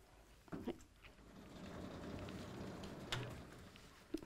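Sliding blackboard panels in a lecture hall being moved, a soft rumbling slide lasting about two seconds with a small knock near the end.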